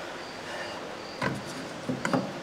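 A cordless circular saw being handled, with two light knocks: one about a second in, and the second near the end as the saw's base plate is set against a wooden 2x4. A faint high chirping repeats steadily in the background.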